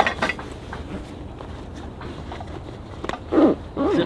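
Fabric carry bag of a folding camping cot being folded over and pressed shut by hand: soft rustling with a knock at the start and a few clicks about three seconds in, then a short voice sound near the end.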